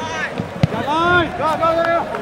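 Several voices shouting at once from the sideline and field of a youth soccer match. One sharp thump sounds about two-thirds of a second in.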